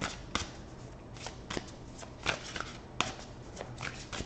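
A deck of tarot cards being shuffled and handled by hand: a string of short, crisp card snaps and flicks at irregular intervals.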